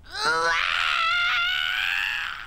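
A cartoon villain's voice: one long, high-pitched cry that glides up and then holds steady as she is driven off.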